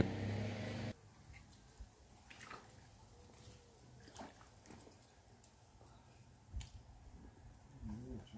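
A steady low hum that cuts off abruptly about a second in. Then mostly quiet, with a few faint scattered knocks and bumps of a man wading in a shallow stream and handling a small RC boat, the loudest a dull thump about six and a half seconds in.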